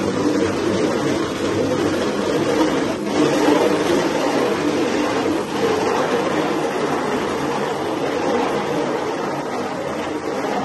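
Strong jet of water spraying against a silkscreen's mesh, washing the design out of the screen: a loud, steady rushing spray without a break.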